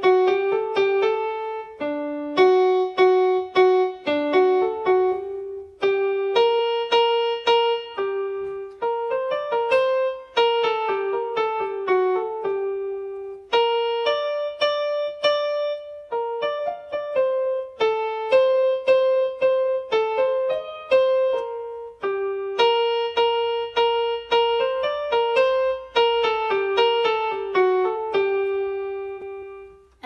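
Electronic keyboard with a piano voice playing a simple melody one note at a time, in short phrases separated by brief pauses; the last note fades out near the end.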